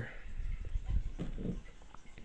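A faint, low mumble of a man's voice over a low rumble on the microphone.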